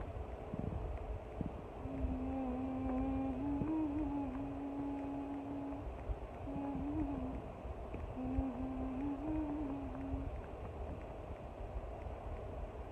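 A woman humming a short tune in three phrases, the longest about four seconds, over a constant low rumble.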